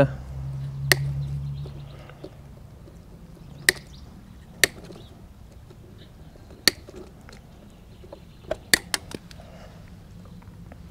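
Side cutters snipping through the insulated wires of a motorcycle wiring loom one at a time, several sharp snips a second or more apart. A low hum dies away in the first two seconds.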